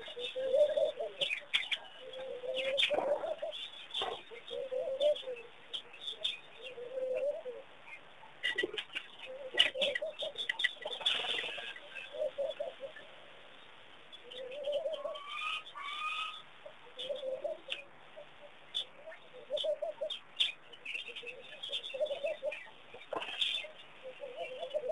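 Birds calling at a waterhole: a short mid-pitched cooing note repeated about every second or two, with scattered high chirps and small clicks.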